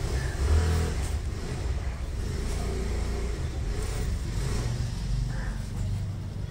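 A motor vehicle's engine running. It swells in the first half second and then holds steady.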